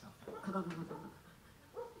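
A person's voice making a short non-word vocal sound, loudest about half a second in, with a brief second one near the end.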